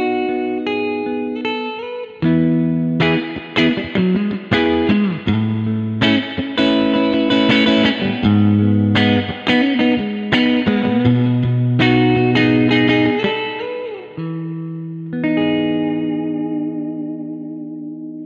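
A 1994 Japanese-made Fender Jazzmaster electric guitar, played through a Twin Reverb amp simulation, picking arpeggiated chords. It is played harder and louder from about two seconds in, with a few short pitch dips. Near the end one chord is left ringing with a slight waver.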